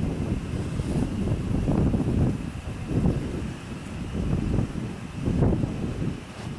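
Wind buffeting the microphone: an uneven low rumble that swells in several gusts.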